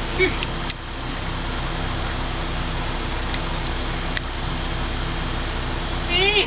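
A steady mechanical hum fills the whole stretch, with a sharp click about a second in and a fainter one about four seconds in.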